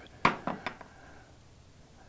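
A few light metallic clinks within the first second, the first the loudest: aluminum AC tubes and fittings knocking as they are handled and set down on a wooden workbench.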